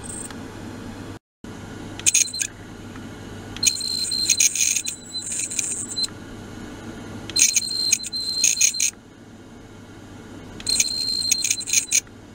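A handheld sonic vibrating device pressed against a clamped metal block: a steady low hum, broken by four bursts of high-pitched ringing tones, each lasting from under a second to about two seconds.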